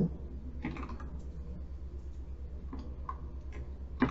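Computer keyboard being typed on in short, scattered keystrokes, a few clicks spread through the moment, over a steady low hum.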